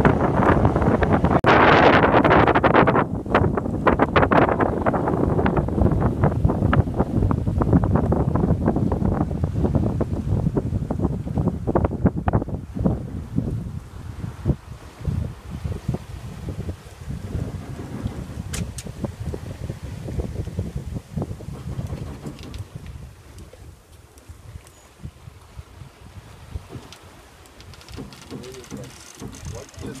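Wind buffeting the microphone aboard a sailing yacht under way, loud and gusty for the first dozen seconds, then easing to a quieter rush with scattered small knocks.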